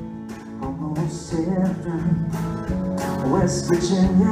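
Live country band playing a song's instrumental intro: acoustic guitar strumming with keyboard and drums, growing louder as the band comes in, with a cymbal crash about a second in and another near the end.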